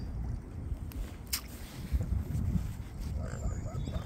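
Mute swans feeding in shallow water at the shore, dabbling their bills through the water and mud with wet dabbling sounds and small splashes.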